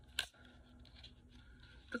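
One short sharp click as a brow pencil is taken out of its retail packaging, followed by quiet handling over a faint steady hum.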